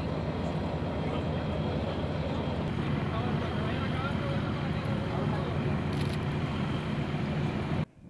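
Heavy armoured vehicle engines idling steadily, mixed with people's voices, cutting off suddenly near the end.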